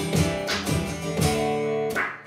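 Acoustic guitar strummed in a steady rhythm between sung lines, with a chord left ringing for most of a second near the end.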